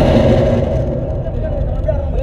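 A football strikes the pitch's cage netting right beside the camera with one sharp impact at the start, shaking the mount, followed by a low rumble that fades over about a second.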